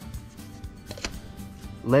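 Quiet background music, with a couple of faint clicks of tools being handled.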